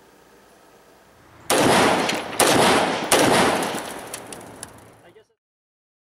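Rapid gunfire from several guns, starting about a second and a half in with three loud surges of shots under a second apart, then thinning out and cutting off suddenly.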